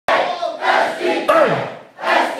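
Crowd of people shouting and yelling together, starting abruptly, with one voice's yell falling sharply in pitch about a second and a half in before the noise dies away near the end.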